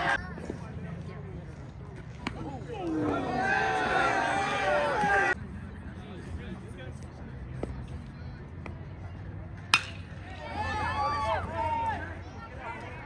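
A single sharp crack of a bat hitting a baseball just under ten seconds in, with voices calling out before it and again right after it.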